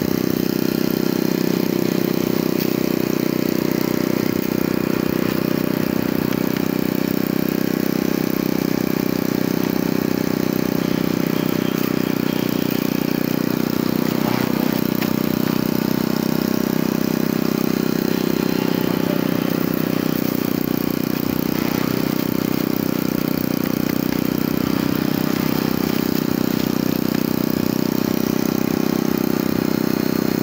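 Electric centrifugal juicer running continuously at full speed, a steady loud motor hum, as fruit is pushed down its feed chute.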